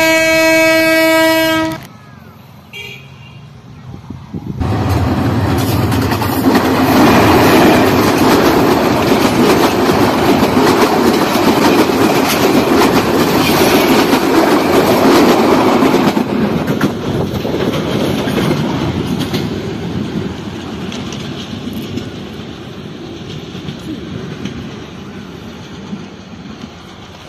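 Train horn sounding a steady blast for about two seconds, then a train passing close by on the track, its wheels running loudly over the rails for about ten seconds before fading away slowly as the last cars go by.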